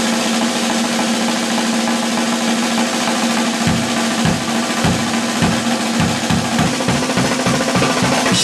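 Acoustic drum kit played hard: a dense, steady wash of cymbals and drums over a steady ringing drum tone. Bass drum strokes come in about three and a half seconds in and come quicker and quicker, to about three or four a second by the end.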